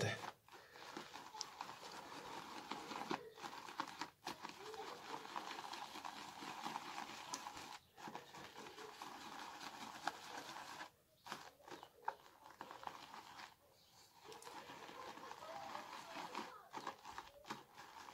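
Shaving brush whipped round a bowl of shaving-soap lather: a faint, wet, crackling hiss from the knot working the foam, broken by a few short pauses.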